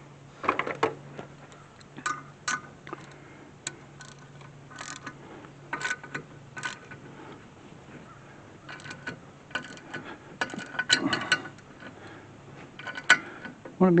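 Metal clicks and clinks of a jaw-type gear puller being fitted onto a rear brake rotor, its jaws knocking against the rotor and wheel studs as it is positioned to pull off the stuck rotor. The short knocks come scattered, busiest a little past the middle.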